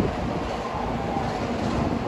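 N700S Shinkansen train rolling slowly toward the platform: a steady rumble of wheels on rail.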